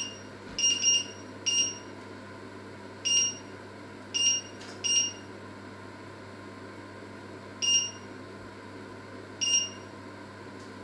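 Touch-control panel of a glass-ceramic electric hob beeping as a finger presses it to set a cooking zone: about eight short, high beeps at uneven intervals, some in quick pairs.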